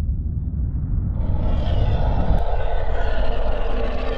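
Intro sound effect: a deep rumble, joined about a second in by a louder hissing, whooshing swell that holds steady.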